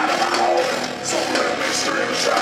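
Live heavy rock band playing, with distorted electric guitars and a drum kit with cymbal strokes, heard from the crowd in a bar room.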